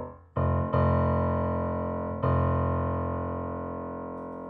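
Yamaha C5 grand piano being played: three chords struck in the first two and a half seconds, the last about two seconds in, each left to ring and slowly fade.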